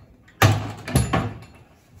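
Wooden cupboard doors pushed shut: two bangs about half a second apart.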